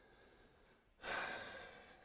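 A man's breath, taken close to a clip-on microphone: a soft, breathy rush about a second in that lasts about a second and fades away.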